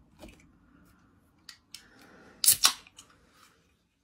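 A few light clicks and taps as an aluminium drink can is handled at its top, with a loud pair of sharp clicks a little past halfway.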